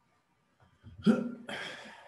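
A man's voice: a short, abrupt utterance heard as the word "bien", followed by a breathy sound that trails off.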